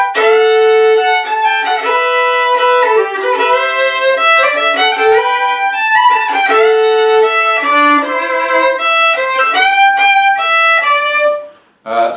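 Unaccompanied fiddle playing a melody in G up an octave, with two-note double stops at the chord changes. The playing stops shortly before the end.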